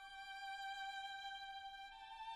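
Quiet, slow violin music: one long held note that steps up to a higher note near the end.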